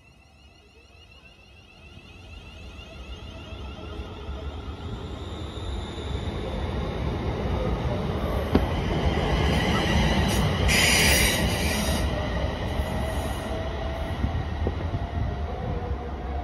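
A ScotRail electric multiple-unit train pulling away from the platform, its running noise building steadily as it gathers speed past. A short high wheel squeal comes about eleven seconds in.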